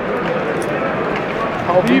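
Hockey crowd in an ice arena: a steady hubbub of many voices, with one louder shout rising near the end.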